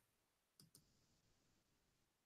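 Near silence, with two faint clicks close together a little over half a second in.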